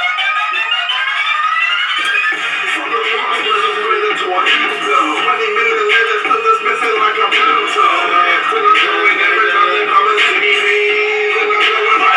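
Music: several rising tones sweep upward for about the first two seconds, then a full track with a steady beat takes over.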